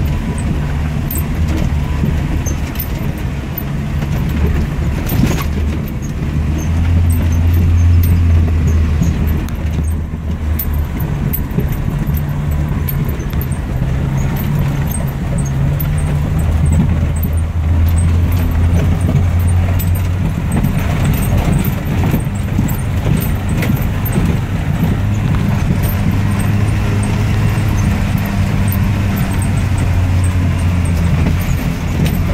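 Jeep Wrangler's engine running steadily as it drives over a rough dirt track, its pitch rising and falling several times with the revs. Light rattles and knocks from the bumpy ride come through over the engine.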